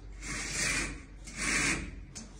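Cord-drawn pleated curtain being pulled along its ceiling track: two rubbing, swishing strokes of cord, runners and fabric, each under a second long, one per pull on the cord.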